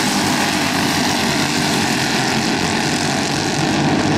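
Racing karts' single-cylinder Briggs & Stratton flathead engines running at speed together, a steady drone with no rise or fall.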